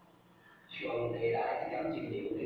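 A man lecturing in Taiwanese Hokkien; his voice resumes after a short pause about three quarters of a second in.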